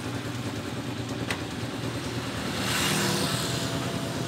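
A motor engine running steadily, growing louder with a hissy swell about three seconds in and then fading, with a single sharp click about a second in.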